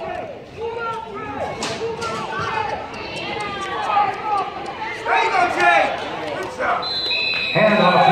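Players and sideline spectators shouting and calling out during a youth football play, then a referee's whistle blows near the end with one long, steady, shrill tone, stopping the play.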